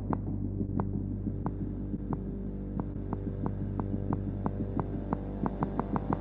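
Electronic track: a steady low synthesized drone with sharp clicks about every two-thirds of a second, speeding up to several a second near the end.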